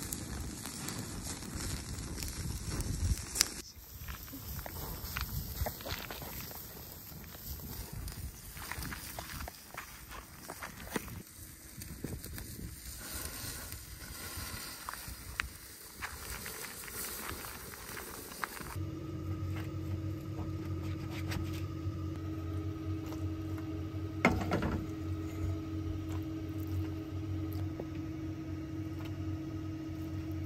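Campfire crackling, with meat sizzling on a grill grate and scattered sharp clicks and crunches. About two-thirds of the way in this gives way to a steady low hum.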